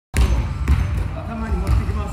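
Dull low thumps, several in two seconds, with voices.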